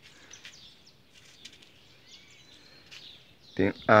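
Faint, scattered bird chirps over a quiet outdoor background, with a voice starting to speak near the end.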